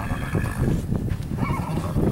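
Horse at the fence, with shuffling hoof and movement noise and two brief, faint wavering whinnies, one at the start and one about a second and a half in.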